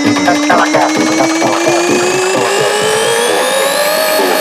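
Brazilian eletrofunk track in an instrumental build-up: a tone rising steadily in pitch over quick, evenly repeated percussion hits, with no vocals.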